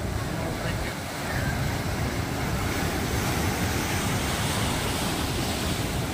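Sea surf: waves breaking and washing in as a steady rushing noise, a little louder from about a second in.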